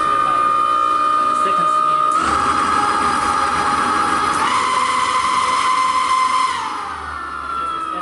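SiAECOSYS QS138 90H permanent-magnet mid-drive electric motor spinning fast with no load under throttle, giving a steady high electric whine. The whine shifts in pitch twice as the speed mode is changed, then falls over the last second or so as the motor slows.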